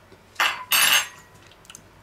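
A metal fork set down, clattering twice in quick succession; the second clink is louder and rings briefly.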